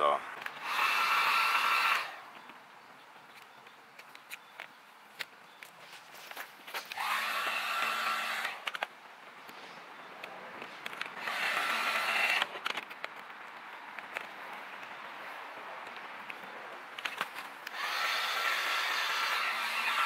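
Corded heat gun running in four short bursts of about one to two seconds each: a steady fan whine over rushing air, switched on and off while it warms vinyl wrap so it can be stretched onto the grill trim.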